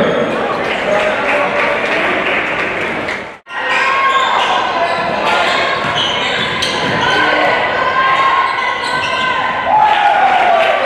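A basketball bouncing on a hardwood gym floor during play, with voices echoing in a large gymnasium. The sound drops out abruptly for a moment about a third of the way in, then resumes.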